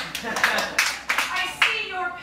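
Hands clapping, about a dozen sharp, separate claps over a second and a half, then stopping as voices resume.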